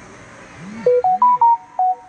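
A short electronic chime melody like a phone ringtone or notification: five quick ringing notes that step up and then back down, starting about a second in and preceded by two brief low swoops.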